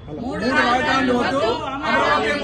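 Several voices, men and women together, calling out a slogan in unison.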